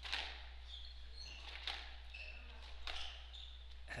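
Squash rally on a glass-walled hardwood court: the ball is struck and smacks off the walls roughly once a second, with short high squeaks of court shoes on the wooden floor between the hits.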